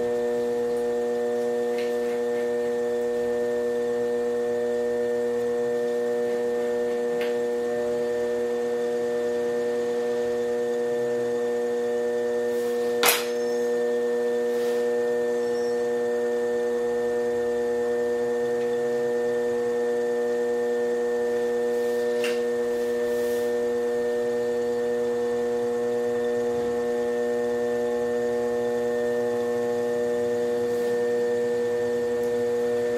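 Electric potter's wheel motor running at a constant speed, a steady electric hum. A single sharp click comes about thirteen seconds in, with a few fainter ticks around it.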